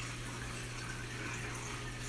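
Steady running-water hiss from a reef aquarium's pumps and water circulation, with a low steady hum underneath.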